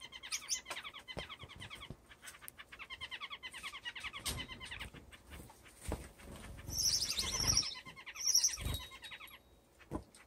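Small caged finches chirping and singing: rapid trilled phrases in the first two seconds and again around three to four seconds in, then louder, higher chirps around seven and eight and a half seconds in. Light clicks and soft thumps are scattered through.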